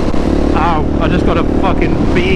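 Husqvarna 701 supermoto's single-cylinder engine running under way, with the rider's voice over it from about half a second in.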